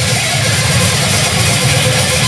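Heavily distorted electric guitar played loud in a live grindcore set, a dense, steady wall of noise without clear drum hits.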